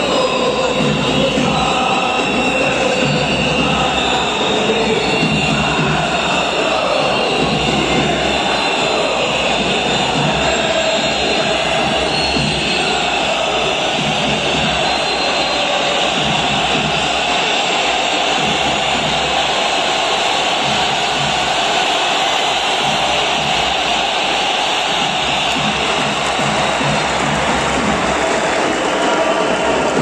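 A packed stadium crowd of football supporters singing a chant together, a steady, loud mass of voices.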